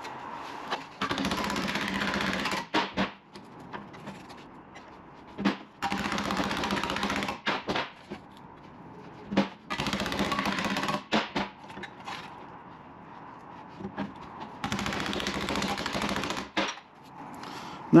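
Sheet steel clamped in a bench vise being hammered over into a bend: three runs of rapid tapping of about two seconds each, with single metal knocks between them.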